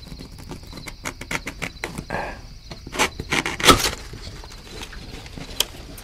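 Cardboard takeout box being opened close to the microphone: a run of crisp crackles and taps as the lid is pried loose and folded back, the loudest a little over halfway through, then a few lighter taps.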